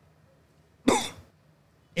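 A man's single short cough, sharp at the start and fading quickly, about a second in.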